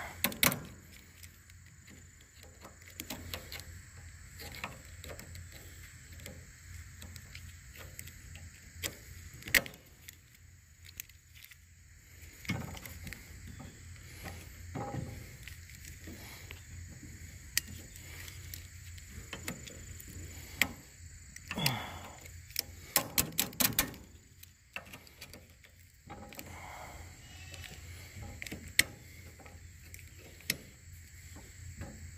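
Needle-nose pliers working at a rusty cotter key in the reel-lift cylinder pin: scattered sharp metal clicks and scrapes, with a quick run of clicks about two-thirds of the way through. The pliers are not getting the key out.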